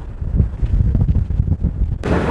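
Wind buffeting the microphone on the open deck of a moving riverboat: an uneven low rumble that gusts up and down.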